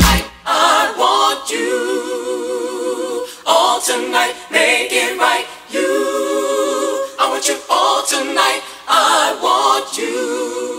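A cappella break in a 1983 R&B song: the drums and bass drop out and layered voices hold sustained chords with vibrato, in phrases separated by short breaks.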